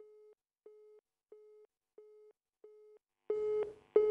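Telephone-style busy tone on the call line: short beeps at one steady pitch, about one and a half a second, faint at first. About three seconds in, the beeps turn louder and buzzier.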